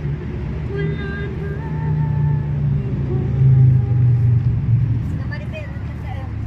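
A woman singing karaoke-style into a handheld microphone, with long held notes that slide slowly in pitch. A steady low rumble runs underneath.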